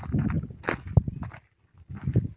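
Footsteps on dry, bare ground and stubble: several steps, falling quiet about one and a half seconds in.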